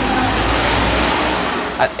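A loud rushing noise with a low rumble that swells and then fades over about two seconds.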